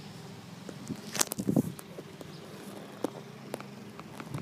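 Handling noise: a cluster of light knocks and taps about a second in and two more around three seconds, over a steady low hum. No strummed chords.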